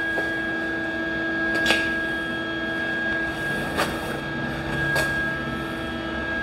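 A steady machine hum with a low tone and a higher whine, with a couple of faint clicks.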